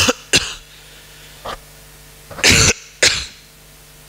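A person coughing in two fits: a couple of sharp coughs at the start, a small one about a second and a half in, then a longer, louder cough about two and a half seconds in followed by one more.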